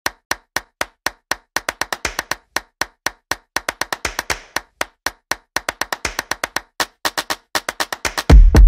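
A rapid series of short, sharp percussive clicks like wood-block taps, at about four a second at first and then more closely packed.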